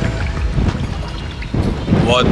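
Wind buffeting the microphone, a low rumble that grows louder about one and a half seconds in, with background music under it.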